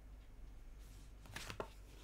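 A deck of tarot cards being shuffled in the hands, with two short, soft card snaps about one and a half seconds in, over faint room hiss.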